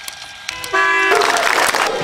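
A short horn toot, held steady for under half a second about three-quarters of a second in, followed by a noisy rush.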